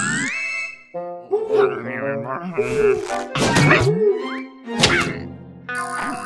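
Cartoon soundtrack: comic music scored to the action, with a rising glide at the start, as an eye snaps open. It is followed by several sharp hits with short bending tones about halfway through and just before the end. Short wordless character vocal sounds run through it.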